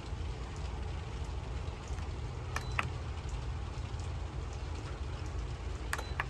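Steady low background hum, with two faint clicks of the rice cooker's control-panel buttons being pressed about two and a half seconds in.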